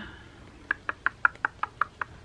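A quick run of about eight light, sharp clicks or taps, unevenly spaced, beginning just under a second in.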